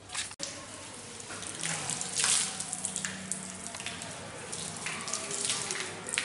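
Water running from wall taps and splashing as hands are washed under them.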